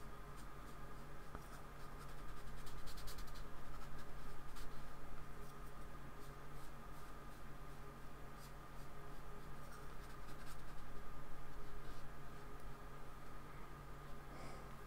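Flat paintbrush stroking acrylic paint across the painting surface, a soft scratchy brushing that swells and fades with each back-and-forth stroke as the paint is smoothed and blended.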